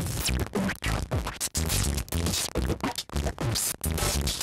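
Electronic drums-and-bass groove from a Eurorack modular synthesizer: sampled drums from a Rossum Assimil8or with a randomly sequenced bassline from an IME Stillson Hammer MK2. The groove is choppy, with frequent short gaps and low notes that drop in pitch.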